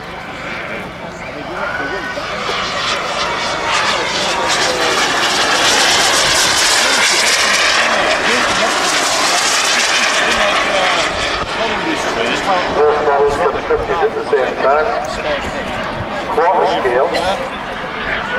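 Large-scale radio-controlled model Grumman F9F Panther jet flying past, the hiss and whine of its small jet turbine growing louder to a peak about midway, then easing as it passes.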